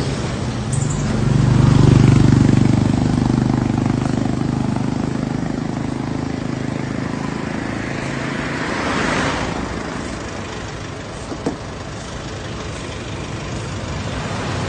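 Motor-vehicle engines running on a road with traffic noise, heard from a moving vehicle. A low engine drone swells about two seconds in and eases off, and a rush of noise rises and fades around nine seconds.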